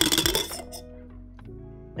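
A metal cocktail shaker with ice in it clinking and rattling as it is handled, in a short clatter during the first half second. Then only soft background music with steady held notes.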